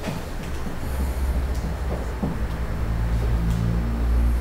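A low, steady rumble that grows a little stronger after the first second, with a faint hum over it in the second half.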